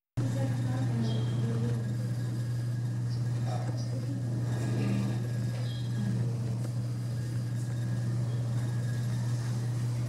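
A steady low hum throughout, with a few faint, short bird chirps and quiet voices now and then.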